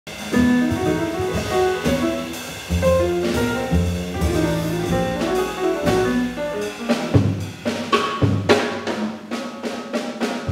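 Live jazz piano trio playing: grand piano melody and chords over upright double bass, with a drum kit. The drums and cymbals get busier about seven seconds in.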